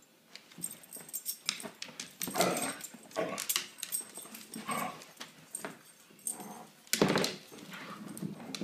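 Two dogs, a Siberian husky and a black dog, play-fighting: a run of short, irregular dog vocalisations mixed with scuffling. They start about half a second in and are loudest at about two, three and seven seconds in.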